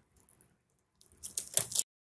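A hand crinkling clear plastic film at a PC case: a short rustling crackle in the second half that cuts off abruptly.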